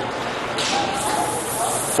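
Indistinct background voices and general noise of a large indoor roller hockey rink. A hiss rises about half a second in and fades near the end.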